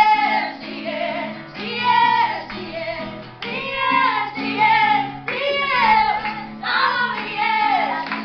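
A group of women singing together over a strummed acoustic guitar, in phrases that swell and drop every second or so.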